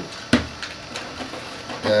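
A single sharp click about a third of a second in, like a handling knock, then only faint background noise until speech resumes at the end.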